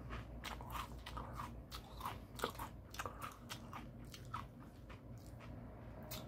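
A person chewing crunchy snack food, with a run of faint, irregular crunches.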